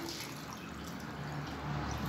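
Water being poured from a plastic pitcher into a clear plastic cup, a steady splashing fill.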